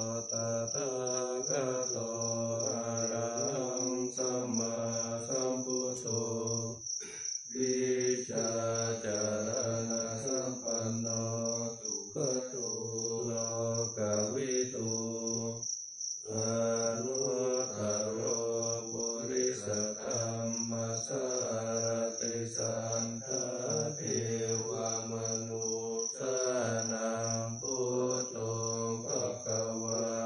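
A group of voices chanting the Thai Buddhist morning chant (tham wat chao) in Pali in unison, on one steady low pitch, breaking briefly for breath a few times. A steady high-pitched pulsing trill runs underneath.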